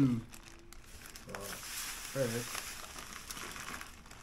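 Plastic bag of seasoned breading mix crinkling and rustling as it is handled, for about two seconds in the middle.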